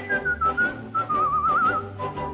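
A whistled melody plays over an instrumental accompaniment with a steady beat. The whistle moves through a few short notes, then holds a wavering note with vibrato that breaks off near the end.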